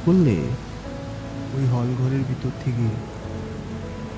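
Steady rain sound effect, with a low music drone and a voice in snatches over it.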